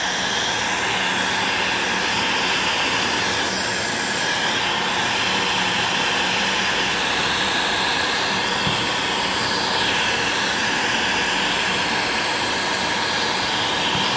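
Handheld Ozito electric heat gun running, a steady rush of fan and blown air that holds unchanged throughout. It is being played over an old vinyl sticker to soften the adhesive so the sticker peels off.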